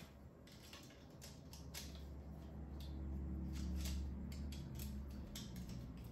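Small clicks and handling noise as plastic drive-tray rails are pressed back onto the sides of a 3.5-inch hard drive. A low hum swells in the middle and fades near the end.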